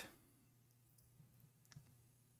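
Near silence: room tone with a faint low hum, and one faint click near the end.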